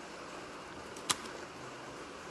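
Low room noise with one sharp click about a second in, from hands handling paper cut-outs and glue at a table.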